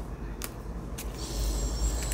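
A deck of oracle cards shuffled by hand, with two sharp card snaps in the first second, over a steady low rumble. In the second half a hiss with a faint whistle-like tone rises and gets louder.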